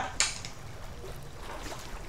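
A brief pause in a woman's speech: low, steady background noise, with a short breathy sound just after her last word.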